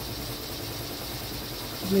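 BAi embroidery machine stitching in the background: a steady, low mechanical hum.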